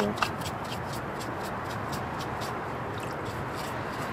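A parts brush scrubbing a gasoline-soaked Briggs small-engine block in a bucket, in a quick, irregular run of bristle strokes against the metal. The gasoline soak has softened the grime.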